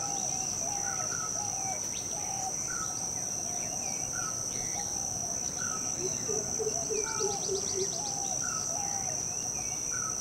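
Tropical rainforest ambience: a steady high-pitched insect drone, with short bird-like calls repeating about once a second. Between about six and eight seconds in come a quick run of low pulsing notes and a fast series of ticks.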